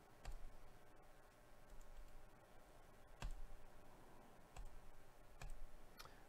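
Faint, spaced-out clicks at a computer mouse and keyboard while a list is copied and pasted into a spreadsheet, about five in all, the loudest about three seconds in.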